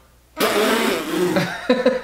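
A man bursts out laughing: a sudden, loud, breathy burst of laughter about half a second in, followed by a few shorter laughs near the end.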